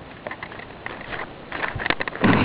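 Light, irregular clicks and rustles over a steady hiss, from a person moving about with a handheld camcorder.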